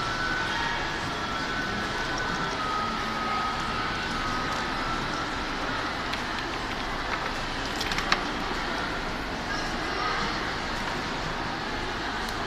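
Steady background noise of a large hall with faint, indistinct voices in the distance, and a few small clicks, the sharpest about eight seconds in.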